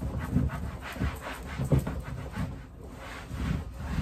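A paper towel rubbing over the textured plastic side of a trash bin in quick, irregular wiping strokes.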